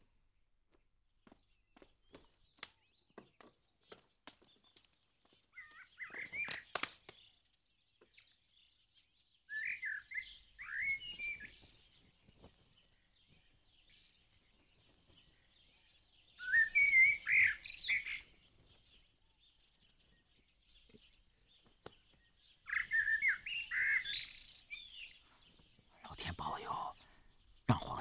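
A songbird chirping in three short bursts of quick, sliding chirps, about ten, seventeen and twenty-three seconds in, with scattered faint clicks between them.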